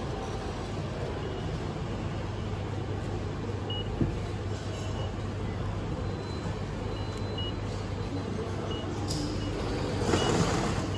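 Steady ambient noise of a station concourse with a low hum, broken by a few faint short high-pitched beeps and one small tap about four seconds in.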